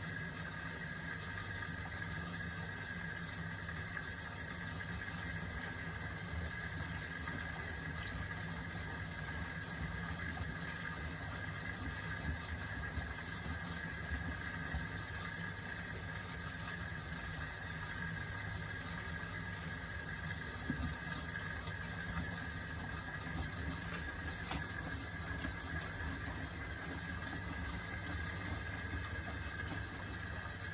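Miele W4449 front-loading washing machine tumbling a wash load: water and wet laundry sloshing in the drum, with a steady whine underneath throughout.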